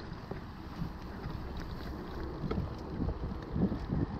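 Iron Horse Unity 3.2 mountain bike riding along: steady wind noise on the GoPro's microphone and tyre rumble, with a few faint light ticks. The ticks are typical of the front disc brake rubbing on one side, as it is misaligned.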